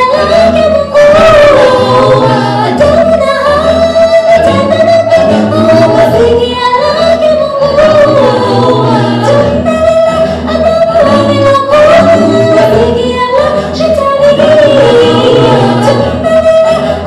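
Mixed male and female vocal group singing a cappella into microphones: a sustained, gently bending melody over a steady low vocal bass line.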